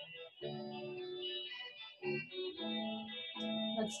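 Background music of sustained keyboard chords, each held for about a second, with brief breaks between them.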